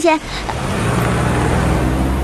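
A Porsche Cayenne SUV driving off: its engine and road noise swell about half a second in and then carry on as a steady low hum.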